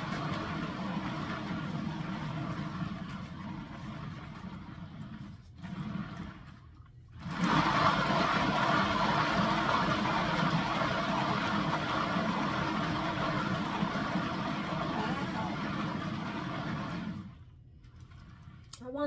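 Paint-spinner turntable motor spinning an acrylic pour canvas, running with a steady whir. It drops out briefly about six seconds in, comes back louder, and stops about a second before the end.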